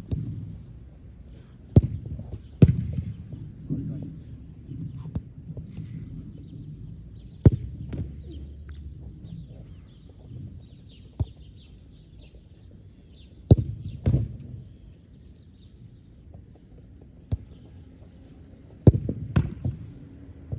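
A football being struck, caught and landing on an artificial-turf pitch: about nine sharp, separate thuds, two pairs of them close together, over a low rumble.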